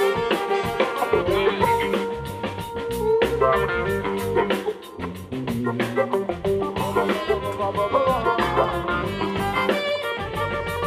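Live funk band playing an instrumental stretch: saxophone section and electric keyboard over electric guitar, bass and drum kit keeping a steady groove. A short drop in the band's volume comes a little before the middle.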